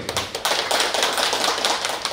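A small seated audience applauding, a patter of many individual hand claps.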